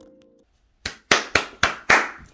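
The last chord of a harp dies away, and after a brief pause come five crisp hand claps, about four a second.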